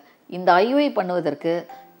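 A woman speaking in Tamil, with a short held vowel near the end.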